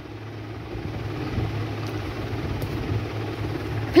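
A steady low mechanical rumble with a droning hum, like a running engine or motor, getting louder about a second in and holding.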